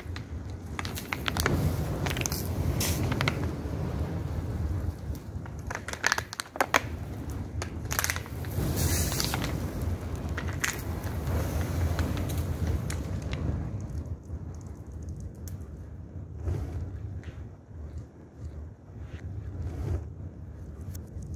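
Open fire burning in a building's doorway, crackling and popping over a low steady rumble, with a few sharp louder cracks about six seconds in. The crackle thins out over the last few seconds.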